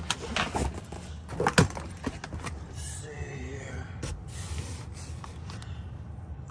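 Damp cardboard boxes being shifted and handled: a few scrapes and knocks in the first couple of seconds, the loudest about one and a half seconds in, then quieter rustling.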